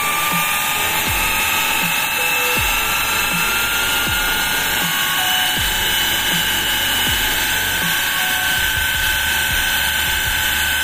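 Steam jetting with a steady hiss from a small steam turbine that belt-drives a 12-volt DC motor used as a generator. A thin whine from the spinning turbine and generator slowly rises in pitch as it speeds up under load.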